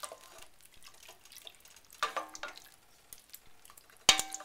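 Wooden spoon stirring a thick tomato chili mixture in a stainless steel pot: faint wet stirring with a few light clicks.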